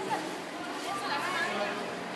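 Indistinct chatter of several voices talking at once in a room, with no single voice standing out.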